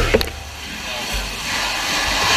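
Steady rushing noise with a low rumble that swells about a second in, as heard inside a burning building.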